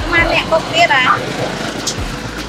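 A few spoken words in the first second or so over the low, steady idle of a tuk-tuk's motorcycle engine.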